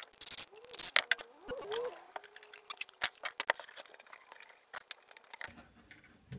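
Irregular clicks, taps and rubbing from hand work: a flexible corrugated plastic hose being pushed and twisted onto a diesel heater's port, and the heater unit shifted on a wooden bench.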